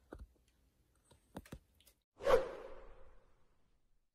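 A whoosh transition sound effect about two seconds in, swelling quickly and fading away over about a second, preceded by a few faint short clicks.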